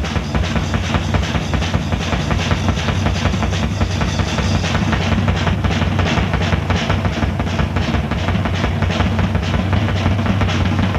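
Progressive rock band playing an instrumental passage: the drum kit is busy with rapid fills and rolls, with bass drum and snare, over a steady bass line.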